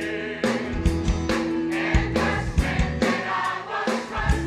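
Large mixed choir of men and women singing a gospel song in unison over instrumental backing with a regular beat.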